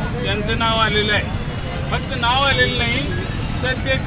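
A man speaking over a steady low rumble of street traffic.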